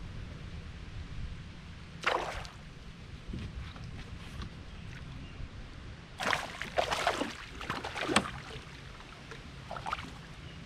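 A hooked largemouth bass splashing and thrashing at the boat's side as it is landed by hand: one splash about two seconds in, then a flurry of splashes a few seconds later. Under it runs a steady low rumble.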